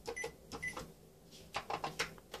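Control panel of an electronic Japanese bidet toilet seat giving two short high beeps as its buttons are pressed, with faint button clicks and taps near the end. The wash has not started yet.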